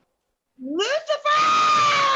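A woman screaming: about half a second in, a rising cry, a brief break, then one long held scream.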